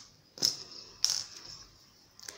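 Hands handling a small crocheted cotton piece and its thread: two short, soft rustles about half a second and a second in.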